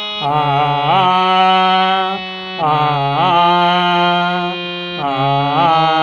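Harmonium reeds holding sustained notes under a voice singing sargam syllables of an alankara exercise, in three held phrases with a short pause between the first and second.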